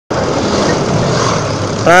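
Steady road and wind noise with a low engine hum while riding in moving traffic. A man's voice starts right at the end.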